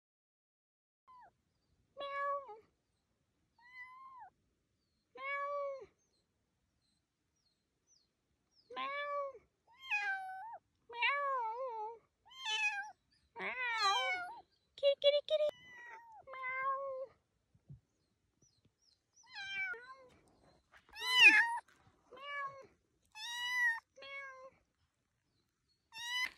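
A young kitten meowing over and over in short, high-pitched cries, some wavering in pitch, with pauses between them; the calls come faster and louder past the middle.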